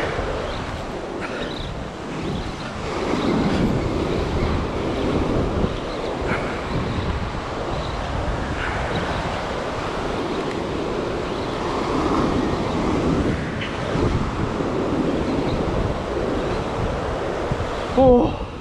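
Ocean surf breaking and washing up a sandy beach, with wind rumbling on the microphone; the wash swells louder a couple of times.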